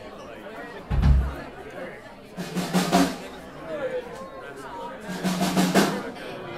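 Drum kit played briefly between songs: a single bass-drum thump about a second in, then two short drum rolls, one near the middle and one near the end, over crowd chatter.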